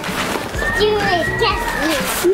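Young girls' voices, chattering and calling out excitedly, over background music.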